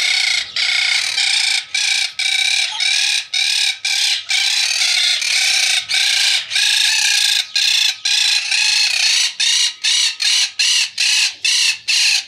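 Quaker parrots (monk parakeets) squawking in a loud, unbroken run of harsh repeated calls, a few a second, turning shorter and choppier towards the end.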